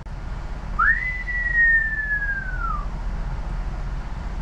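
A person whistling one note that sweeps quickly up, then slides slowly down for about two seconds, over a low steady hum.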